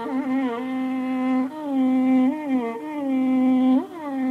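Carnatic violin playing a slow melody in raga Mohanam in its lower register: long held notes joined by slides and wavering ornaments (gamakas).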